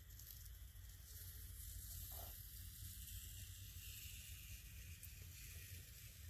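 Masking tape being peeled slowly off watercolor paper, a very faint steady hiss.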